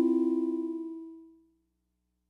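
Yamaha CS-50 analogue polyphonic synthesizer holding low notes with a fast, even wobble in its level. The notes fade away over about a second and a half, then stop.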